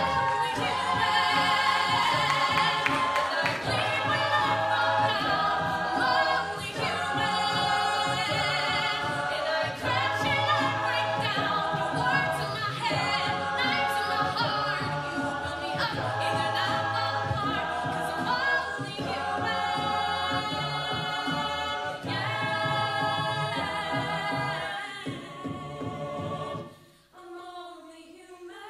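Mixed a cappella group singing full-voiced behind a female soloist, with a sung bass line and vocal percussion. Near the end the group cuts out abruptly, leaving the soloist singing softly on her own.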